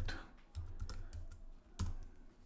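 Typing on a computer keyboard: a quick run of light key clicks, then one louder keystroke near the end.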